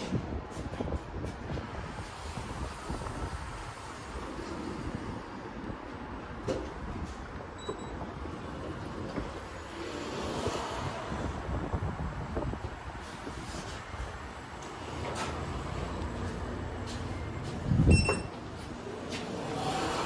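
Schindler 3300 elevator doors sliding, over a steady noise. A short high beep sounds about eight seconds in, and a louder low thump with another beep comes near the end.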